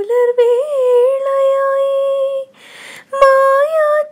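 A woman singing unaccompanied, with no words: a short bent note, then one long steady held note, a breath about two and a half seconds in, and a new note starting.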